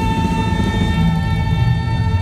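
Live band playing through a PA system: one long high note is held steady over the bass and drums.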